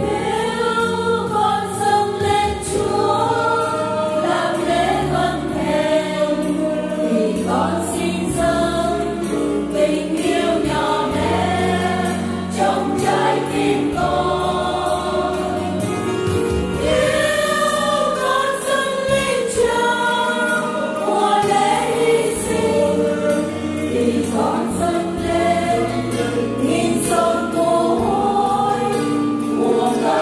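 Choir singing the refrain of a Vietnamese Catholic hymn in two parts: the melody in Vietnamese, with a second part answering on long 'A…' notes. The singing is steady and unbroken.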